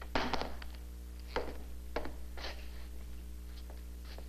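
Steady low hum and hiss of an old 16mm film soundtrack, with a few soft, irregular knocks and rustles from handling or movement on the set.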